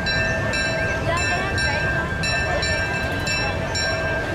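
Train running, a steady rumble with a few steady tones held throughout, mixed with the murmur of a crowd.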